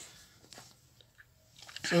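Near-quiet room tone with a few faint light clicks, then a man's voice starts near the end.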